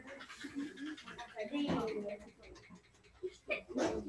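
A sneeze near the end, with faint talking in the background.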